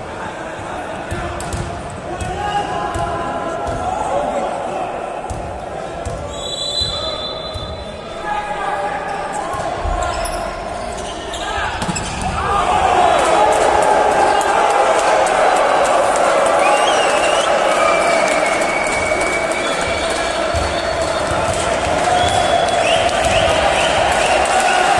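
Indoor volleyball play echoing in a large sports hall: repeated hits of the ball and players' shouts, with a short whistle blast about seven seconds in. From about halfway the spectators' voices swell into a loud, steady din.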